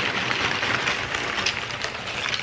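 Tortilla chips poured from a bag onto a sheet pan: a steady crinkling rustle of chips and bag with small clicks.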